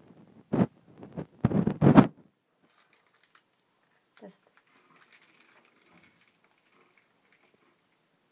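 Foil wrapper of a small wafer bar rustling and tearing open in two short loud bursts in the first two seconds, then faint crunching as the crispy wafer is bitten and chewed.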